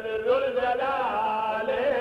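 A man's voice chanting a zakir's masaib recitation, a Shia lament, in long wavering held notes.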